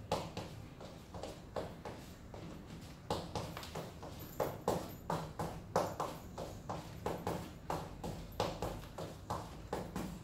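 Black platform wedge sandals stepping on a polished stone floor in salsa basic steps: a steady run of taps, about two a second.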